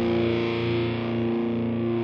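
A distorted electric guitar chord held and ringing out steadily as a ska-punk song's last chord, with the bass dropped away.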